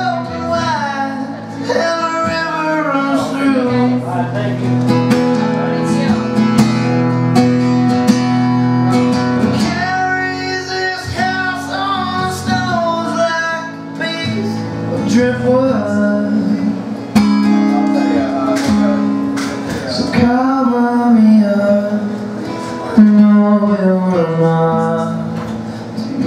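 A man singing while strumming an acoustic guitar, performed live.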